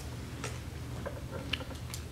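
A few faint, irregularly spaced clicks and taps over a steady low hum.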